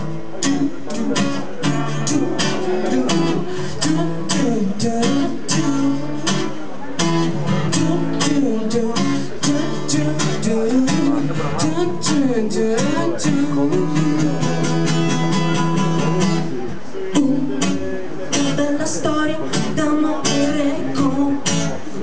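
Acoustic guitar strummed steadily in a live song, with a voice singing over it.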